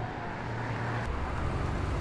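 City street traffic noise. About halfway through, a deep rumble swells as a car passes close by.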